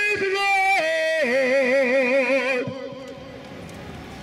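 A man singing a worship song solo into a microphone. He holds one note, steps down to a long note with vibrato, and lets it fade out a little under three seconds in.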